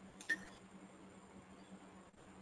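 Quiet room tone through the presenter's microphone, with a low steady hum and one short click about a third of a second in.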